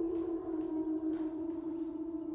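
A steady, sustained synthesizer drone holding one pitch, part of the trailer's score, with a few faint soft ticks over it.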